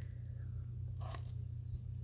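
A steady low hum with a brief rustling scratch about a second in, from a plastic-sleeved stack of paper cups being handled.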